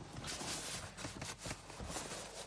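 Rustling and a few soft clicks and knocks from a handheld phone being moved around inside a car cabin.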